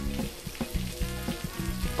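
Stream of urine spattering on pavement, a steady hiss, with background music underneath.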